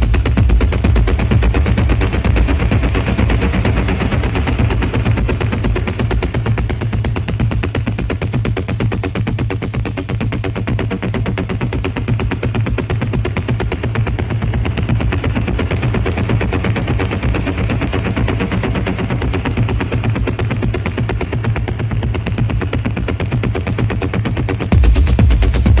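Dark techno: a dense, rapid-fire percussive pattern over a steady heavy bass. In the last few seconds the high end is filtered away, leaving a duller sound.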